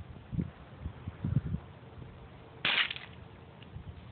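A single sharp gunshot about two and a half seconds in, fired at a beer bottle target, preceded by a few low thumps.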